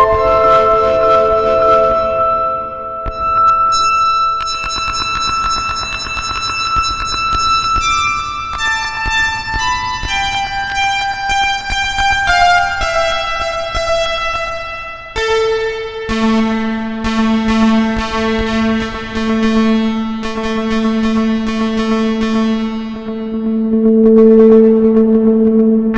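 Behringer Neutron analog synthesizer playing a slow line of single sustained notes that step mostly downward. About fifteen seconds in it settles on one held low note with a strong octave above it, which wavers a little in level as it holds.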